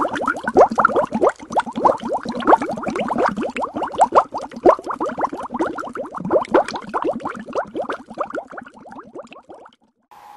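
Liquid bubbling sound effect: a fast, dense run of bubbles popping and plopping. It thins out near the end and stops just before the end.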